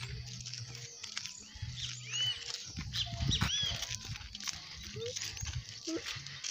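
Quiet outdoor scene: footsteps on a dirt road and a few short, high chirping animal calls, about two and three and a half seconds in.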